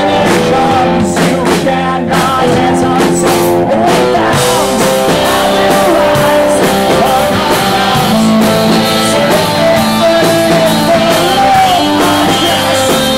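Live rock band playing loudly and without a break: electric guitar and drums, with a lead vocal sung over them.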